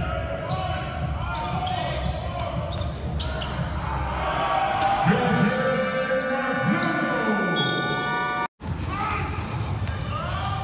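Basketball game sound in a large arena hall: a ball bouncing on the court, with voices. From about halfway a held tone with several pitches sounds for about three seconds, and the sound drops out for an instant near the end.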